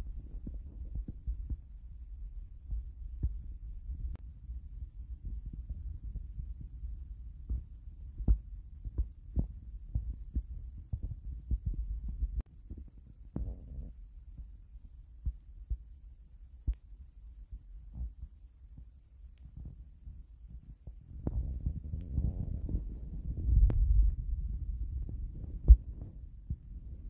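Low rumbling handling noise from a phone microphone being moved about while filming, with scattered small clicks and taps. It eases off in the middle and swells again near the end, where one sharper click is the loudest moment.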